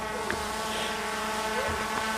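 Quadcopter camera drone's propellers humming steadily as it hovers, a layered whine of several even tones.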